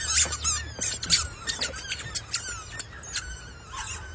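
Squeaky rubber chicken toys squeaking as they are stepped on: a quick run of short, high squeaks, coming thick at first and thinning out toward the end.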